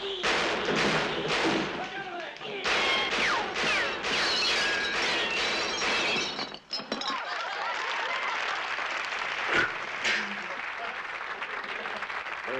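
A rapid series of crashes and breaking glass from a staged brawl, mixed with shouting voices, with one sharp loud crash near the end.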